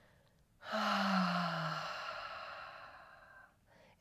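A woman's long, audible sigh, breathed out after lowering from a long-held bridge pose: it starts about a second in, voiced at first and falling in pitch, then trails off into plain breath over about three seconds.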